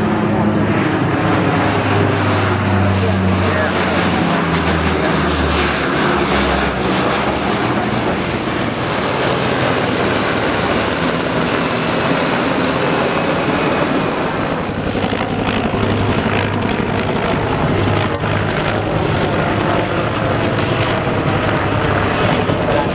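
Lockheed C-130 Hercules four-engine turboprop flying past, its propeller drone falling in pitch as it goes by over the first several seconds. It is followed by a steady roar and, in the second half, the rotor noise of MH-60 Seahawk helicopters with a low drone and regularly repeating beats.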